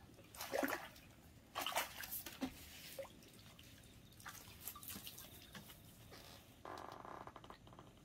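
Irregular splashes and drips of water with scattered small knocks as wet fishing gear and a landing net are handled, plus a short rattling patch near the end.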